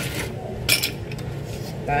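A single glassy clink of ice against a drinking glass about two-thirds of a second in, over a low steady hum.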